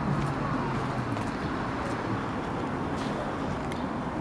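Street background noise: a steady rush of traffic, with a few faint clicks and a low hum that fades out about a second in.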